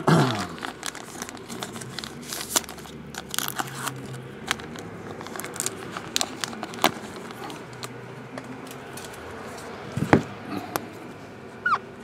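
Clear plastic team bag crinkling and rustling as a hard plastic graded-card slab is slid into it and handled, with scattered clicks and a louder knock about ten seconds in. Just before the end a marker squeaks briefly on the plastic.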